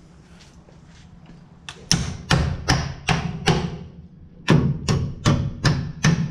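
Claw hammer driving the nails of a blue plastic electrical box into a wooden wall stud: two runs of about five quick, sharp strikes each, beginning about two seconds in, with a short pause between them.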